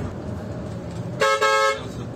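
A coach's horn sounding one loud blast of a bit over half a second, broken briefly just after it starts. Steady engine and road noise from inside the moving bus runs underneath.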